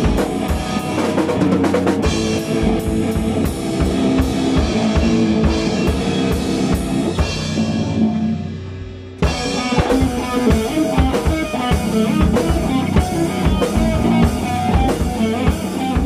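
Instrumental rock played live by a band of electric guitar, bass guitar and a Pearl drum kit, with steady kick and snare hits under the guitars. Just before 9 seconds the playing thins and fades into a short lull, then the whole band crashes back in together.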